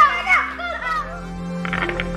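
Excited children's shouts that trail off within the first second, then background music comes in.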